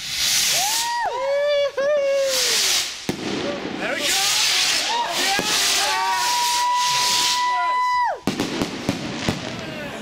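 Firework rockets launching together: a loud rushing hiss from the rocket motors in waves, with high whistling tones, one held steady for about two seconds before dropping away. Sharp crackling pops near the end as shells burst.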